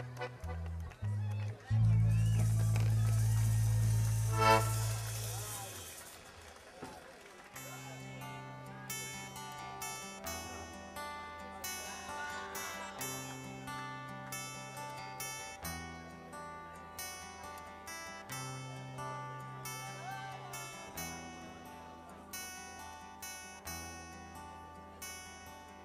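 A diatonic button accordion (organetto) piece ends on a loud held final chord about two seconds in, which dies away by about six seconds. An acoustic guitar then starts a new piece, playing a picked introduction of evenly spaced plucked notes.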